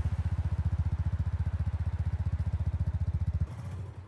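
Motorcycle engine sound effect: a steady, rapid low putter at an even pitch that cuts off about three and a half seconds in, leaving a fainter low rumble.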